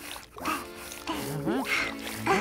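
Cartoon soundtrack: background music with a scrubbing brush working in short regular strokes on wet, soapy stone, and a brief rising-and-falling voice-like cry.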